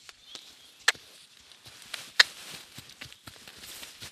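A saddled horse's hooves stepping on arena sand as it moves off into a trot on the lunge line, with a few sharp clicks, the loudest about two seconds in.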